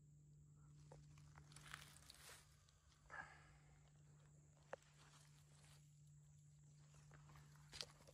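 Near silence, with a few faint scattered rustles and crackles in dry pine needles and leaf litter, about two and three seconds in and again near the end.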